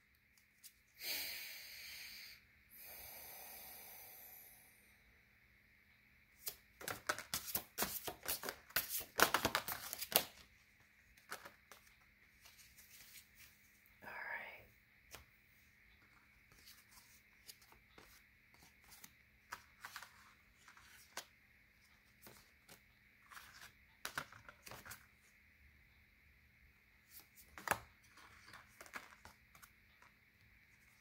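Tarot and oracle cards being shuffled and handled: a few seconds of soft sliding and riffling near the start, then a quick run of papery snaps and taps, then scattered single flicks and taps as cards are drawn and laid down.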